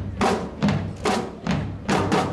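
Marching band percussion playing loud accented strikes in a steady rhythm, about two a second.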